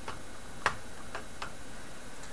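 Four short, light clicks as a fingertip touches the keys of an IBM Model M13 buckling-spring keyboard around its red TrackPoint nub; the second click, about two-thirds of a second in, is the loudest.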